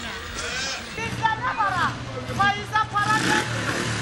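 People's voices calling and talking, with a steady low engine drone setting in about a second in.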